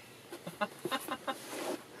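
A person laughing: a quick string of short "ha" sounds, ending in a breathy exhale.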